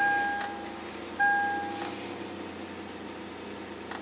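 Two electronic chime tones about a second apart, each a steady beep of about half a second, over the steady idle of a 2004 Lexus IS300's freshly started engine.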